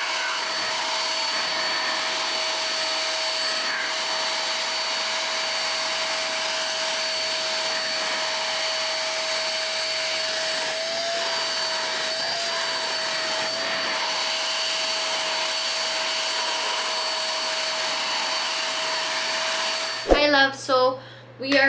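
Handheld vacuum cleaner with a crevice nozzle running steadily, a high motor whine over a rush of air, as it picks up bits of leaves and flowers from carpet and upholstery. The pitch wavers briefly a few times around the middle.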